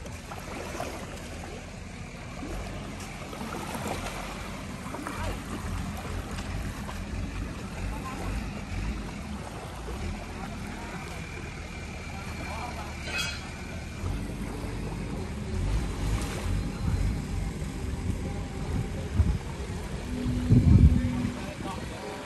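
Small waves lapping on a sandy shore, with wind rumbling on the microphone and a steady low motor hum. A louder low rumble comes near the end.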